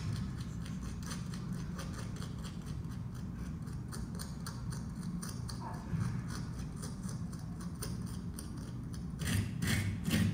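A small hand tool scratches and clicks as it scrapes into a block of red clay-like material, heard through gallery speakers over a steady low room rumble. Near the end this gives way to louder scraping, as a wire rake drags through loose red soil.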